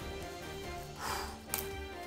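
Quiet background music, over which a knife slits the plastic shrink wrap of a card booster box: a soft rustle of plastic about a second in and a short, sharp scrape just after.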